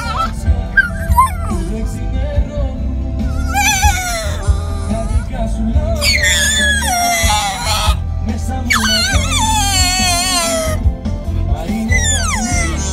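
Blue Staffordshire bull terrier puppy howling along to a Greek song, with three long wavering cries about four, six and nine seconds in, the later ones falling in pitch, over the music's steady bass.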